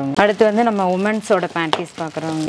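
A person talking steadily, with a couple of brief clicks from plastic-wrapped garments being handled.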